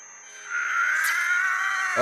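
Science-fiction energy sound effect from the anime's soundtrack: a thin high whine, then from about half a second in a loud pitched tone that slowly rises, as an energy blast builds.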